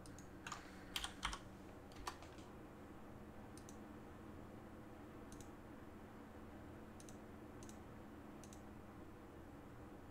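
Faint clicks of a computer keyboard: a quick cluster of key taps in the first two seconds, then single taps every second or so, over a steady low hum.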